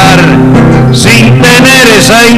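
Acoustic guitar music playing a pause between recited verses, with a wavering melodic line held over steady low notes.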